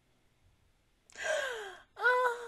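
A high, breathy sigh from a person, starting about a second in and falling in pitch as it fades.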